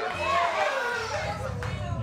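Church congregation calling out overlapping responses to the preacher, with a low, steady note coming in about halfway through.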